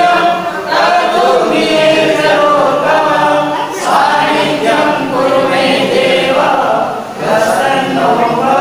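A group of voices singing a devotional song together, unaccompanied, in phrases of about three to four seconds with short breaks between them.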